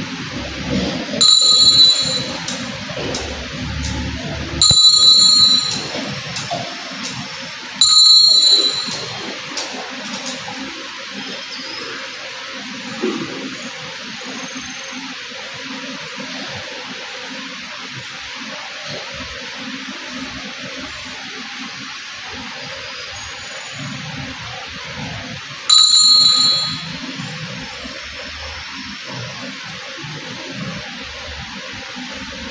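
Altar bell rung at the consecration of the Mass, marking the elevation of the host: three bright rings about three seconds apart, then one more near the end.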